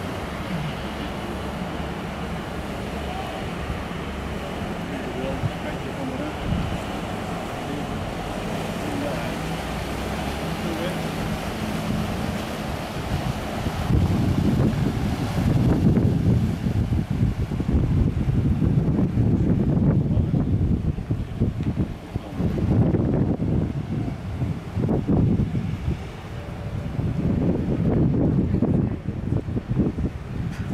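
River cruise ship Excellence Queen's engine running steadily as the ship moves slowly past close by. About halfway in, gusty wind starts buffeting the microphone and rumbles louder than the engine in uneven surges.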